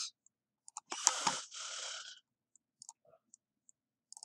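Computer mouse clicks and faint ticks, with a short stretch of breathy, rustling noise about a second in.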